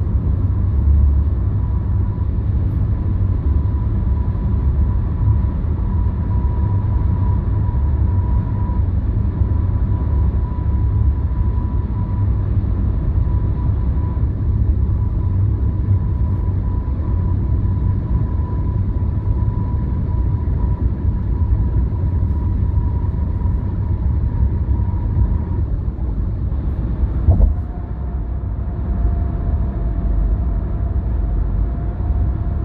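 Steady road and tyre rumble from a car driving at expressway speed, with a faint steady whine. Near the end a brief knock is heard, and after it the whine carries on at a lower pitch.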